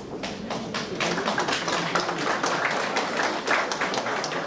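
A small audience applauding, a few scattered claps at first that thicken into steady applause about a second in.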